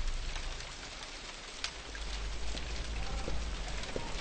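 A steady rain-like hiss with scattered small crackles and clicks over a low rumble, as the tail of a deep boom fades out at the start.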